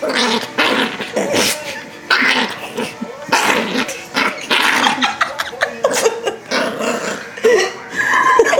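Yorkshire terrier growling in a rapid, irregular stream of bursts with a few yips and barks mixed in, protesting at being held on its back and tickled.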